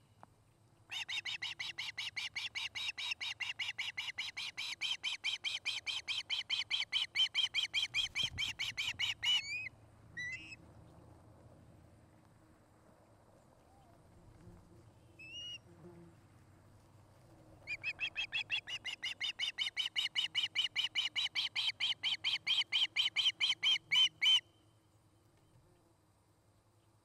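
Osprey calling: a long run of high, piping chirps, several a second, for about eight seconds, then a couple of single calls, then a second run of about seven seconds.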